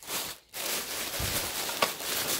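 Tissue-paper packing rustling and crinkling as it is pulled aside by hand, with a short tick near the end.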